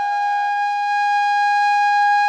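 Background flute music holding one long, steady note.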